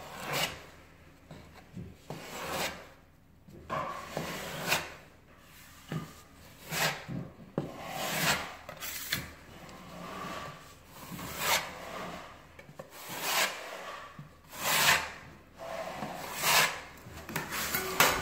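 Metal filling knife scraping wall filler across a plastered wall in repeated rasping strokes, roughly one a second, while skim-coating.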